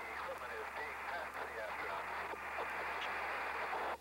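A burst of two-way radio transmission: a voice heard through heavy static over a narrow, tinny radio channel, too garbled to follow. It switches on sharply and cuts off abruptly when the transmission ends.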